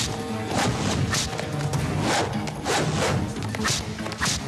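Film fight soundtrack: background score music with dubbed punch and whoosh sound effects, several hits landing about every half second.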